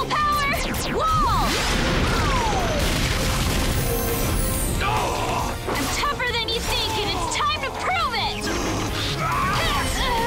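Fight-scene soundtrack: music under a run of sword-clash and hit sound effects, with grunts and shouts from the fighters.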